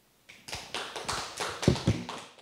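Audience applause: a scattering of hand claps over a hiss, starting about a quarter of a second in.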